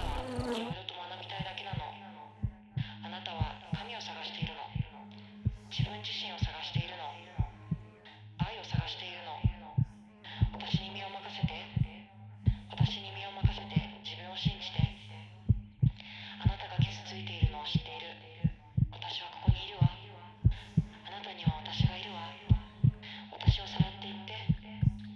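A heartbeat-like pulse of regular low thumps, roughly two a second, over a steady low hum. Intermittent hissing, breathy noise comes in stretches of a second or two with short gaps between.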